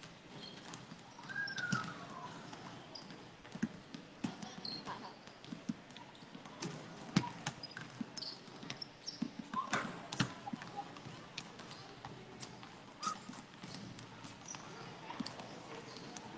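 Several basketballs bouncing on a concrete court, an irregular patter of overlapping thuds with no steady rhythm.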